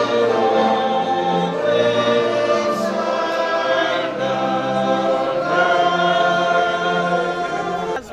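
Choir singing long, held notes in several voice parts, cutting off abruptly at the end.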